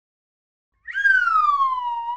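Intro logo sound effect: a single pitched tone that starts about a second in, jumps up and then glides steadily down in pitch, with a slight upturn at its end.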